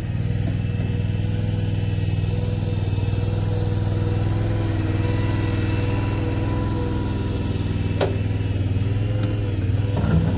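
Ramrod 950 stand-on mini skid steer engine running steadily, with one sharp click about eight seconds in.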